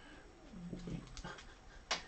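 A dog whimpering faintly a few times, then a sharp click of plastic card holders knocking together near the end.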